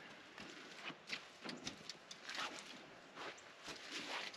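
Faint, irregular footsteps and rustling of someone walking on grass and dirt.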